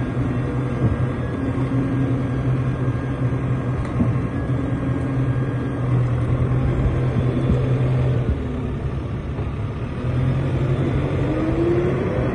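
Diesel engine of a JCB 526 telehandler running steadily as the machine drives slowly past. The note drops back about eight seconds in, picks up again about two seconds later, and a rising whine comes in near the end.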